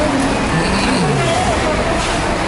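Steady din of a busy bus-terminal hall, with engine and traffic noise beyond it and people talking indistinctly.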